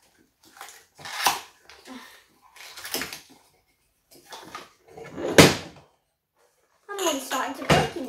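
Cardboard box of drinking glasses being opened and handled: flaps pulled apart and the box knocked about, with several short knocks, the loudest about five seconds in.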